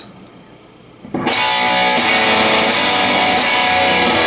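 Electric guitar strumming a chord, starting about a second in and left ringing, with strums roughly two-thirds of a second apart.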